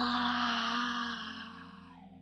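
A woman's long, breathy vocal sigh, 'ahh', sliding down in pitch and then held low before fading out about a second and a half in: a deliberate release sigh.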